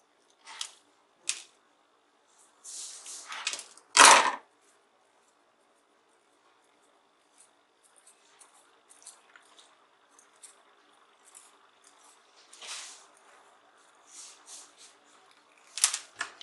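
Small metal side cutters snipping and stripping the insulation off a thin wire: a few short clicks and snaps, then a single sharp knock about four seconds in, the loudest sound. After it come only faint small ticks and rustles of handling the wires.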